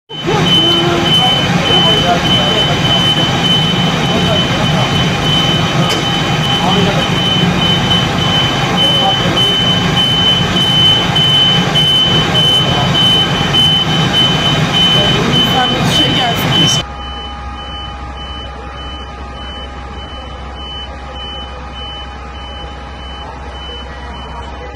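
People's voices over a loud, dense background, with a steady high electronic beep pulsing through it, cutting off suddenly after about seventeen seconds to a much quieter steady hum with a faint repeating beep.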